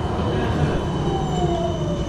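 Electric street tram running along the road: a low rumble under a motor whine that falls steadily in pitch from about a second in, as the tram slows.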